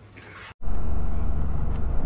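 Faint room tone breaks off at a sudden cut about half a second in. A steady low rumble of a car, engine and road noise heard from inside the cabin, takes over.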